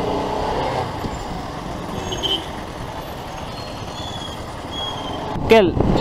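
Motorcycle riding slowly through town traffic: a steady mix of engine running and wind noise on the bike-mounted microphone, with the sound of other traffic around it.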